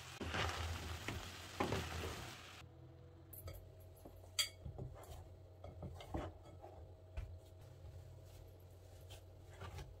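Minced meat, onion and carrot sizzling in a frying pan while being stirred, with two loud scrapes in the first couple of seconds. After an abrupt cut, it is much quieter: soft knocks and one sharp click as hands knead dough in a glass bowl.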